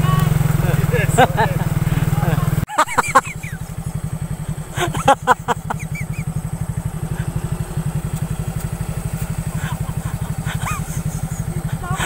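Small automatic motor scooter's single-cylinder engine running as it rides slowly toward the camera on a dirt track. The sound changes abruptly a few seconds in, from a steady low drone to an even low putter, with short bursts of voices and laughter over it.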